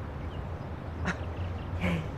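Steady low background hum with two brief, short vocal sounds: one about a second in and one near the end.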